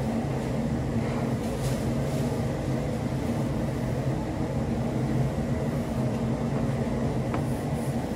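Steady low mechanical hum, like a fan or ventilation unit running, with a few faint soft taps.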